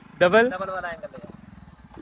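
Honda CD70's small single-cylinder four-stroke engine idling steadily with the bike standing still, with a brief burst of a man's voice over it near the start.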